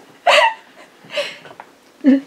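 A woman's laughter in two short bursts, the first loud and gasping, the second fainter about a second later.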